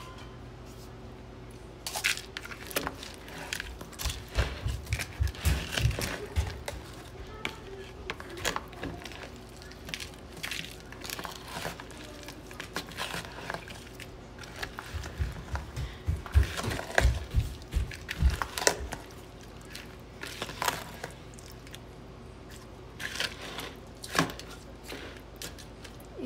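A spatula stirring chunks of raw beef with yogurt, spices and fried onions in a plastic bowl: irregular wet squelches, scrapes and clicks against the bowl, with heavier low thuds in two stretches, a few seconds in and again past the middle.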